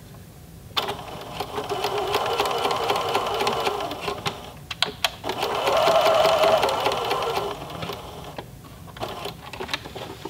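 Electric domestic sewing machine sewing a straight stitch along a seam. It starts running about a second in, stops briefly near the middle, runs again and stops about two seconds before the end. A few sharp clicks follow the second run.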